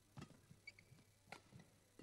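Faint badminton rally: two sharp racket strikes on the shuttlecock a little over a second apart, with a few smaller ticks between them.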